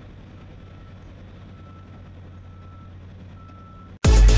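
Vehicle reversing alarm beeping at a construction site, about one half-second beep per second, over a steady low hum.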